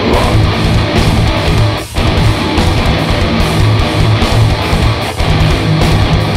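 Heavy band playing live: distorted electric guitars with bass and drums, loud and dense, cutting out for a split-second break about two seconds in and again, more briefly, just after five seconds.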